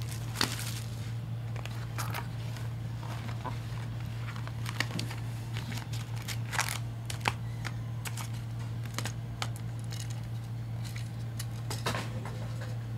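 Cellophane shrink wrap crinkling, then foil trading-card packs rustling and tapping as they are pulled out of a hobby box and stacked, in scattered short sharp bursts over a steady low hum.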